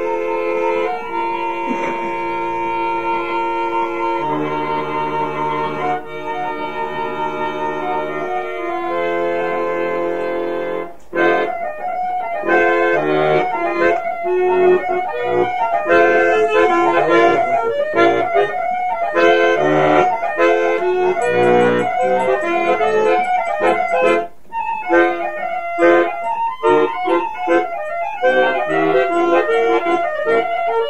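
Instrumental Bulgarian folk music. For about the first ten seconds the band holds long chords, then breaks briefly and goes into a fast run of short notes.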